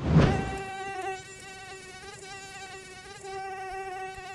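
Mosquito wings buzzing: a steady whine that wavers slightly in pitch. It starts just after a loud, brief rush of noise at the very beginning.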